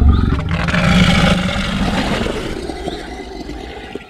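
Dinosaur roar sound effect: one long, loud roar that starts suddenly and slowly fades away over about four seconds.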